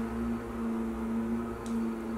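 A constant, steady hum at one low pitch, the unchanging noise that fills the bathroom.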